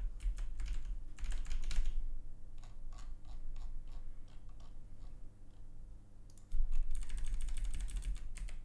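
Keystrokes on a computer keyboard: a fast run of keys about a second in, scattered single key clicks, and another quick run near the end.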